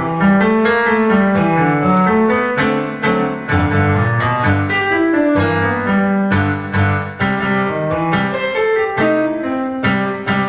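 Solo boogie piece played on a digital stage piano: a steady stream of notes with a moving bass line in the low register and chords and melody above, without a break.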